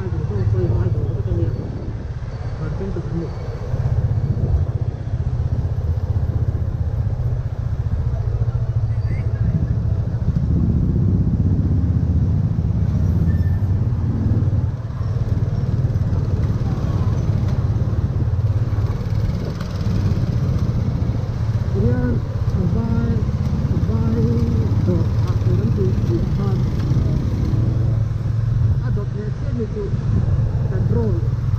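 Motorcycle engine running steadily under the rider in slow town traffic. Indistinct voices come and go over it.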